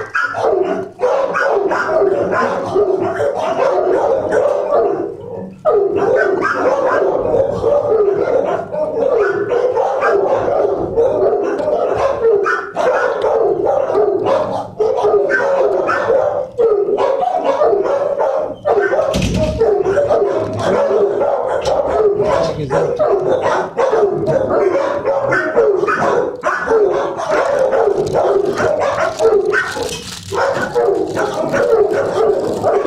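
Shelter dogs in their kennels barking constantly, many voices overlapping with no pause, apart from a brief lull about five seconds in.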